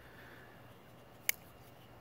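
Spyderco Manix folding knife blade flicked open, one sharp click a little over a second in as the blade snaps out and locks.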